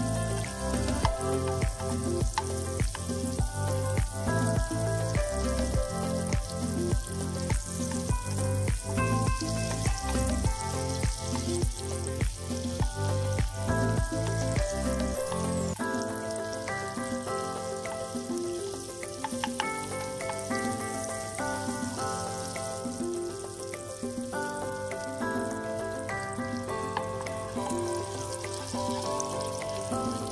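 Butter sizzling as it melts in a hot frying pan, stirred with a wooden spatula. Background music plays over it with a steady beat, and its bass drops out about halfway through.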